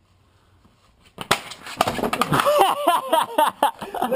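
A white plastic patio chair cracking and collapsing under a seated person, with a sharp crack and clatter about a second in, followed by loud laughter.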